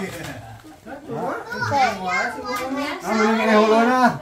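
Children's voices chattering and calling out among people talking, with one drawn-out call near the end.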